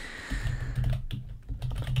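Typing on a computer keyboard: a run of irregular keystrokes.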